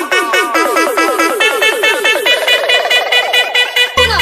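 Electronic dance music remix in a build-up: a repeating synth phrase with dipping pitch and no bass underneath, its repeats quickening into a rapid roll from about halfway through.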